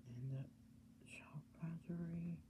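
A person's voice, quiet and low, in short level-pitched phrases with no clear words, over a steady low hum.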